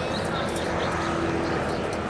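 A steady engine drone, with voices murmuring underneath.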